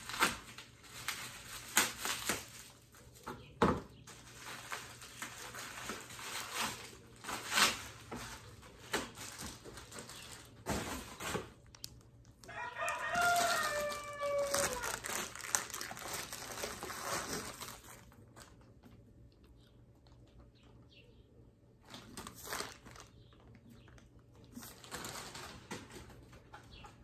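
A rooster crowing once about halfway through: one long call of about two seconds that falls in pitch at the end. Before it, crinkling and clicks from plastic packaging being handled.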